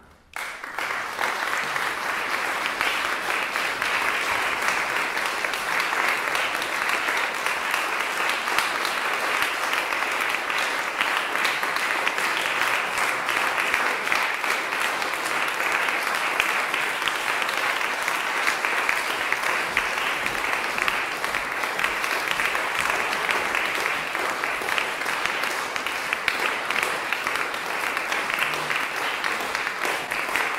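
Audience applauding, breaking out suddenly about half a second in after a near-silent pause and then going on steadily.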